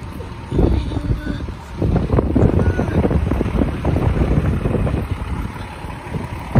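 Wind buffeting the phone's microphone as it is carried along, a dense low rumble with crackling handling noise that builds up about two seconds in.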